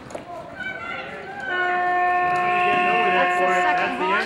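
Arena timer horn sounding one long steady note, starting about a second and a half in and lasting about two and a half seconds: the signal for the end of a polo chukker.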